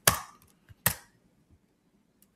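Computer keyboard keystrokes: two sharp key clicks, one at the start and one a little under a second later, with a faint tick between.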